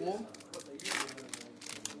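Foil wrapper of a Yu-Gi-Oh booster pack crinkling as it is handled, loudest about a second in.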